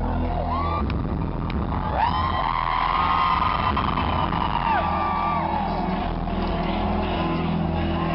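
Live rock band playing through an arena PA, with sustained low notes underneath, while a voice holds a long shouted or sung note for several seconds over the crowd's cheering.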